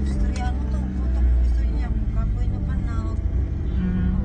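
Steady low rumble of a car's engine and tyres heard from inside the cabin while driving, with voices talking faintly over it.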